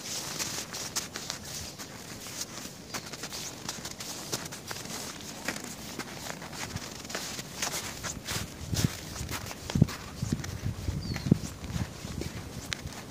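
Footsteps in snow, the walker's own steps close to the microphone, becoming heavier and more distinct from about eight seconds in.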